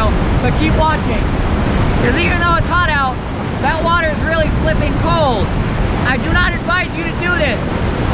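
Glacial creek rapids rushing steadily, with wind on the microphone. Over them a man lets out a string of short wordless vocal sounds that slide up and down in pitch.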